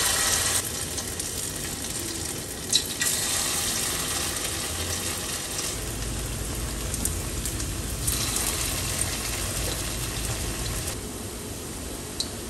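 Hot oil in a pan sizzling as pieces of battered food are dropped in one after another. The sizzle starts suddenly and flares up again about three and eight seconds in as more pieces go in, with a sharp click near the first flare. It eases a little near the end.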